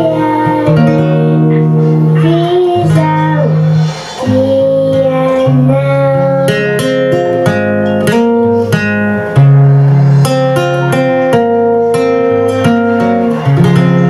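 A young girl singing a song into a microphone, accompanied by an acoustic guitar.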